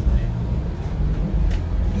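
Low, steady rumble with a fainter hiss above it, the background noise of a handheld camcorder's microphone.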